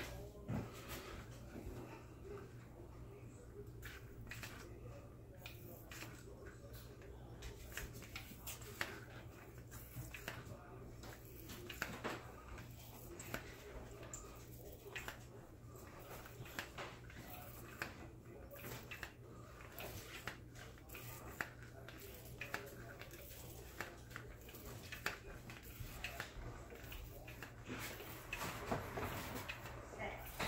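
A Killer Hogs BDI pistol-grip marinade injector being worked into a brisket: faint, irregular clicks and handling knocks from the trigger and needle, over a steady low hum.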